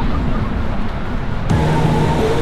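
Steady low rumble of surf and wind on the camera microphone. About one and a half seconds in, it cuts off abruptly and background music begins.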